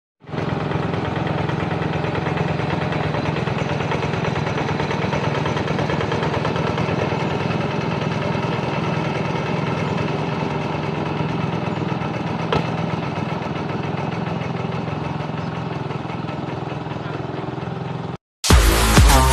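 Engine of a two-wheel hand tractor running steadily in place.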